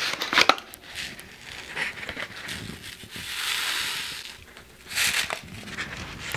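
A paper seed packet of parsley seed being handled and opened, crinkling in small crackles, with a longer soft rustle about halfway through and a burst of crinkling near the end as the packet is tipped.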